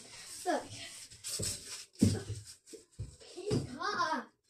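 A child running along a hallway floor with a hobby horse: a few short thudding footfalls, the heaviest about two seconds in, and a child's wordless voice sliding up and down near the end.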